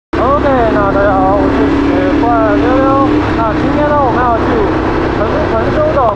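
Motorcycle riding at road speed: a steady engine hum and low wind rumble on the rider's camera microphone, with a person's voice over it.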